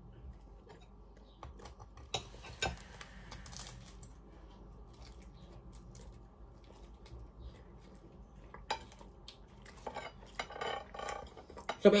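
Metal fork clinking and scraping against a dish while a pastry slice is cut and eaten, a few sharp clicks spread through a quiet stretch.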